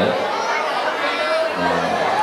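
Many voices reciting together in a chant-like way, with a low voice drawing out long held notes over the murmur of the crowd.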